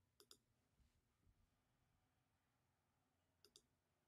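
Near silence broken by two faint pairs of sharp clicks from computer input at the desk, one pair just after the start and another near the end.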